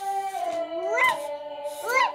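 A singing voice from a background speech-therapy song, holding long notes with sharp upward pitch slides, about a second in and again near the end.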